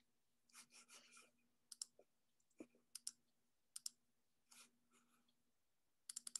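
Faint, scattered clicks of a computer being operated, often two in quick succession, as a mouse and keys are worked to switch the screen share.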